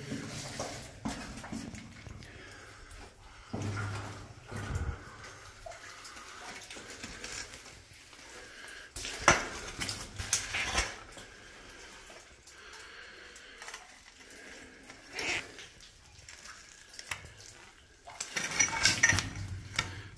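Scattered clinks, knocks and scrapes of quartz rock being pried loose and handled on a rubbly mine floor. A few sharp strikes stand out, the loudest about nine to eleven seconds in.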